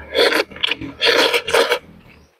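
Close-up eating sounds: a person biting into and chewing food, in three noisy bursts, the longest about a second in.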